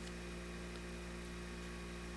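Steady low electrical hum with a row of evenly spaced overtones, unchanging throughout, of the mains-hum kind.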